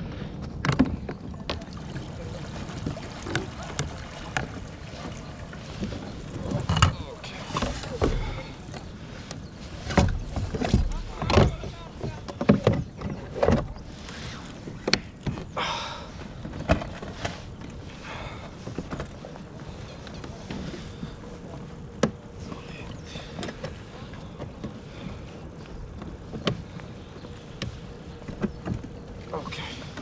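Irregular knocks and clatters of gear being handled aboard a fishing kayak, over a steady bed of water noise around the hull.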